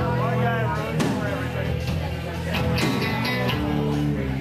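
Live rock band playing: amplified electric guitar with drums, and a voice over the band.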